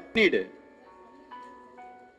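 Background music of a simple electronic tune: clear held notes, each about half a second long, stepping down in pitch.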